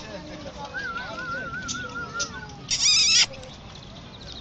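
Male Indian peafowl giving one loud, nasal, high-pitched call about three seconds in, a repeat of the call just before. Earlier a quieter wavering, whistle-like tone rises and falls for about two seconds.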